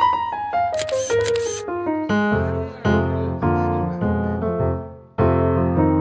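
Piano music: a falling run of single notes, then chords over a bass line that break off briefly near five seconds and start again. A camera shutter clicks a few times in quick succession about a second in.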